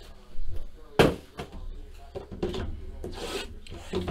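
Cardboard trading-card boxes handled on a table: two knocks as a box is set down, the second the loudest, then cardboard rubbing and scraping as the boxes are slid and moved.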